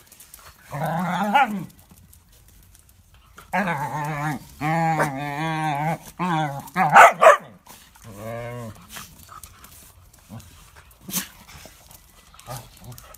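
Small dogs barking at each other in rough play, in drawn-out wavering calls of a second or so, with the loudest short barks about seven seconds in.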